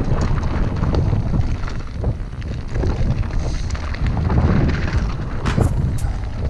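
Wind rumbling on an action camera's microphone as a Specialized Enduro Comp mountain bike rolls down rocky singletrack, with the rattle and clatter of tyres and bike over loose stones. A few sharper knocks come near the end.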